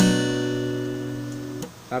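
A single strum of a B minor 7 chord on an acoustic guitar. It rings and slowly fades for about a second and a half, then is cut short.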